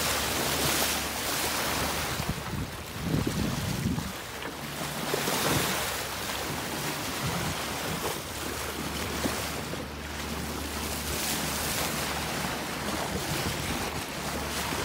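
Sea water rushing and splashing along the hull of a moving sailboat, with wind buffeting the microphone. The splashing swells louder twice, about three and five seconds in.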